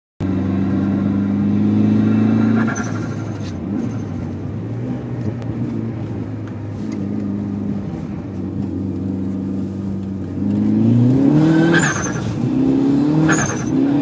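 Mitsubishi Lancer Evolution IX's turbocharged four-cylinder engine heard from inside the cabin, holding a steady note, easing off a few seconds in, then revving up hard through the gears near the end. Each upshift brings a short hiss and chirp from the turbo blow-off valve.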